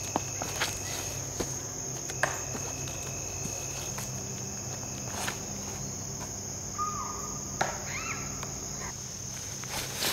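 Steady high-pitched insect chorus from the surrounding woods. Scattered sharp clicks and footfalls sound over it, and a few short chirps come about three quarters of the way in.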